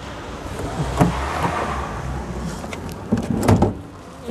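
Driver's door of a Volkswagen Polo being unlatched and opened: a cluster of clicks and knocks about three seconds in, after a stretch of rustling noise.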